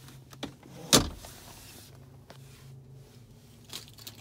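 A single sharp knock about a second in, with a few fainter clicks, over a steady low hum inside a car's cabin.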